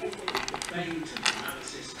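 Light, scattered metallic clicks and clinks of small brass lock pins being worked out of a brass lock core and dropped into a wooden pinning tray.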